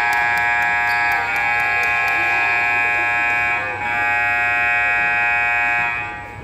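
Gymnasium scoreboard buzzer sounding one long, loud, steady blast, with a brief break about four seconds in before it resumes, then cutting off at the end.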